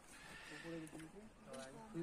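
Faint voices of people talking at a distance.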